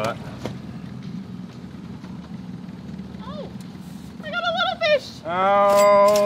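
A woman's long, drawn-out excited "Oh!", loud near the end, over a faint steady low hum.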